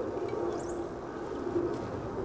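Outdoor background noise that holds steady, with a short high bird chirp about half a second in.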